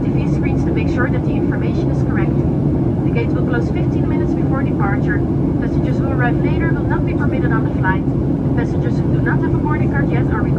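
Steady cabin noise of a Boeing 737-900 in cruise or descent, the drone of its CFM56-7B turbofans and the airflow heard from a window seat beside the engine, with a voice speaking over it.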